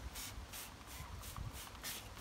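Hand trigger spray bottle squirting garlic wash onto hosta leaves in a quick run of short hissing sprays, about four a second.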